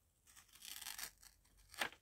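A page being torn out of an old paperback book by hand: a quiet rasping tear about half a second in, then a short sharper rip near the end.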